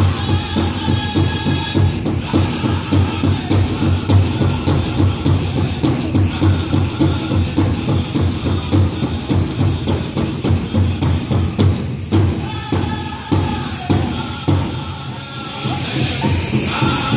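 A powwow drum group sings over a steady big-drum beat, and the metal jingle cones on the dancers' dresses rattle in time.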